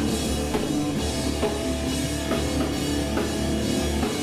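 A loud live rock band playing: a drum kit hit hard with crashing cymbals over an electric bass guitar, with steady drum strokes through the whole passage.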